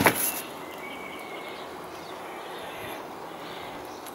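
A short knock right at the start, then a steady, quiet outdoor background with a faint brief high tone about a second in.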